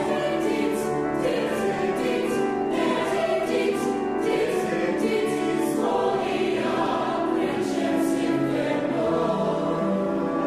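Mixed choir singing in harmony, holding sustained chords, with the 's' sounds of the words audible at intervals.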